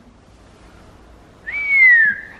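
A person whistling one clear note that slides down in pitch, starting about a second and a half in after quiet room noise.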